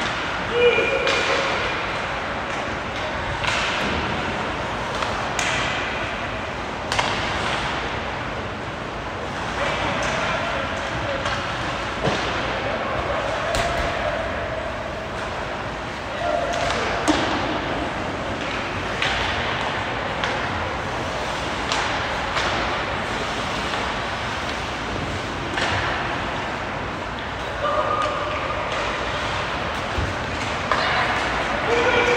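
Ice hockey play in a large, echoing arena: sticks and puck clacking and thudding against the ice and boards in scattered sharp hits, with players' and coaches' shouts.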